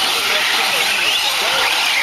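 A pack of radio-controlled 4WD short-course trucks racing on a dirt track: a steady hiss of tyres and drivetrains on the dirt, with electric motor whines rising and falling as the drivers work the throttle.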